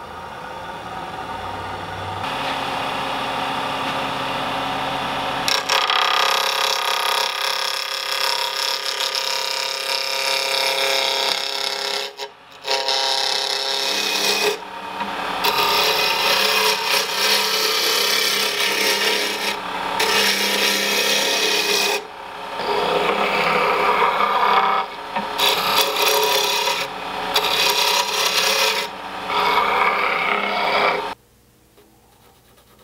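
Wood lathe motor humming as it comes up to speed, then a gouge cutting into a spinning black walnut blank: a continuous rough hiss of wood shavings being peeled off, broken by several short pauses as the tool leaves the wood.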